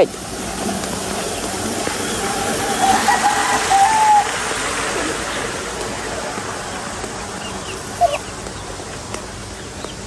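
Steady rushing outdoor noise, with a drawn-out bird call about three seconds in and a brief chirp near the end.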